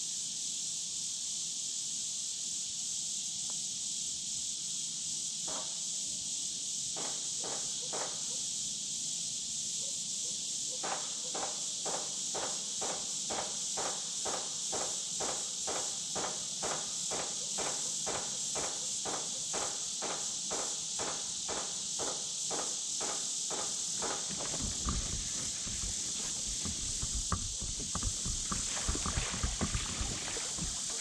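A fishing reel being cranked, an even clicking at about two turns a second, as a hooked bass is reeled in. In the last few seconds come low knocks and splashing as the fish thrashes at the surface beside the kayak. A steady high insect chorus runs underneath throughout.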